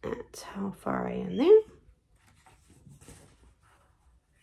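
A person's voice: a short murmured vocal sound, partly whispered, that ends in a quick rising note about a second and a half in, followed by faint rustling.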